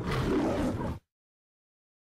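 A lion's roar in the style of the MGM logo sound effect: one roar lasting about a second that cuts off suddenly about a second in.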